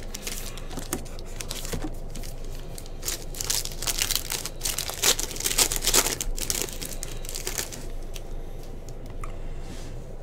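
Foil wrapper of a 2021 Panini Prizm football card pack being torn open and crinkled by hand. The crackling comes in irregular bursts, busiest in the middle, and thins out near the end.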